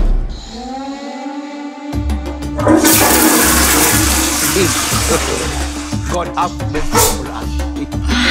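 A toilet flushing: a rush of water starting about three seconds in and fading over the next few seconds, over background music with a steady low beat. A rising tone opens it.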